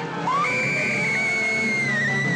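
A long, high scream-like wail over a music score: it rises in about a quarter second in and holds one steady pitch to the end. The falling tail of a similar wail is heard at the very start.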